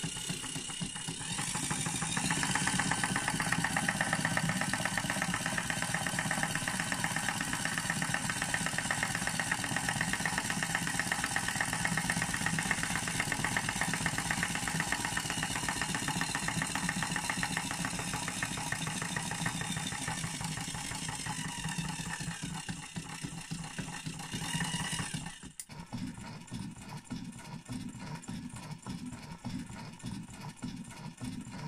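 Small electric motor of a homemade sausage-wobbling machine running, whirring and rattling as it swings a crank arm round, with its pitch stepping up about two seconds in as the speed is raised. Near the end the sound drops to a quieter, uneven running.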